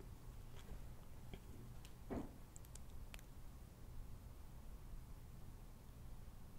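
Very quiet room tone with a steady low hum and a few faint clicks, and one short soft sound about two seconds in.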